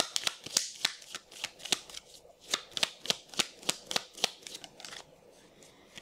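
A deck of Lenormand cards being shuffled by hand: a quick, irregular run of crisp card clicks and snaps that stops about a second and a half before the end.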